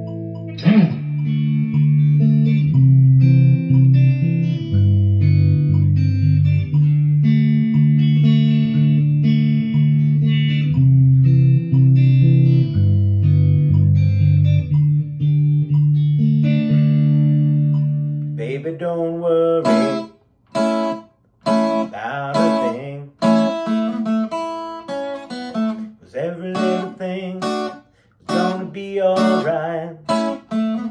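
Telecaster-style electric guitar played clean: held notes over a low line of changing bass notes. About eighteen seconds in, this gives way to choppy strummed guitar chords with brief stops between them.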